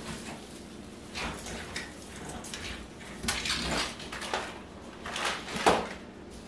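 Rustling of an artificial pine wreath's branches as it is lifted and handled, in a few short, irregular bursts, with a sharper knock near the end.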